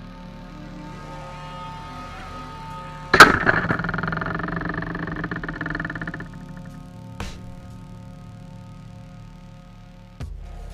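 Two antweight combat robots with spinning marker-pen weapons collide: a sharp hit about three seconds in, followed by about three seconds of loud whirring and clattering that fades, then a smaller knock about seven seconds in. Background music plays underneath.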